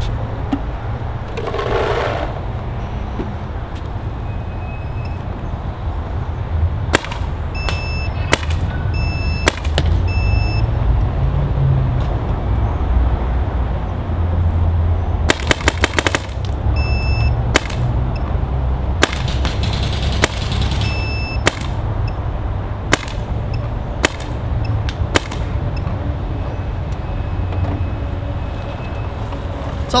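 Dye DM13 electropneumatic paintball marker fired on semi-auto through a radar chronograph: single shots at irregular spacing, with a quick string of several around the middle. Many shots are followed by a short high beep from the chronograph as it takes the reading. A steady low rumble runs underneath.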